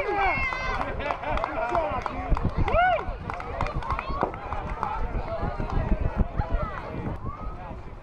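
Several young voices shouting and chattering over each other, high-pitched and overlapping, with a low irregular rumble underneath; the voices thin out toward the end.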